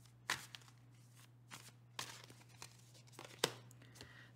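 Tarot cards being handled and drawn from a deck: a handful of faint, sharp card snaps and taps, the loudest just after the start and just before the end, over a steady low hum.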